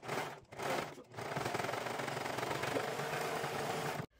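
Brother 1034DX overlock serger stitching: two short bursts in the first second, then a steady rapid run of stitching until it cuts off at the end.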